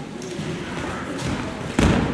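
A person thrown in aikido lands on the gym's foam mats with one loud thud near the end.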